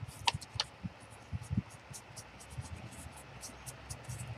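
Round foam ink blending tool dabbing and rubbing ink onto paper: a string of faint, quick taps and scuffs.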